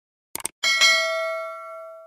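A bell-like ding sound effect: a few quick clicks, then a bright metallic ring about half a second in, struck again a moment later, ringing out and fading over the next second and a half.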